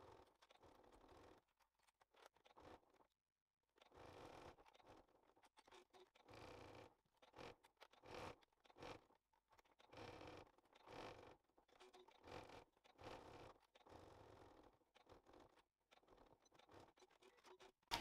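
Near silence, broken by faint, irregular scratchy rustles every second or so.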